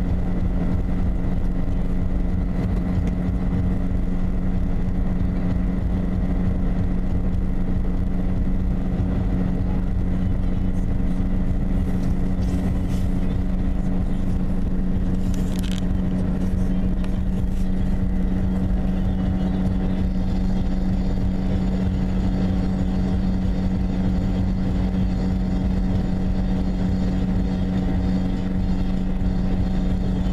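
Steady drone of a car cruising at highway speed, heard from inside the cabin: a constant low engine hum over the rumble of tyres on the road.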